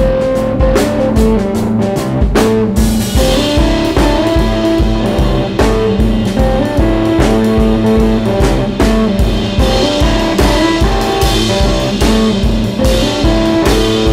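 Electric guitar and drum kit playing an instrumental stretch of a hill-country blues song, with a steady driving beat under a repeating guitar riff. Cymbals join about three seconds in.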